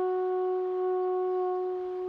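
A single long held note on a brass horn, part of a slow melody, easing off slightly near the end.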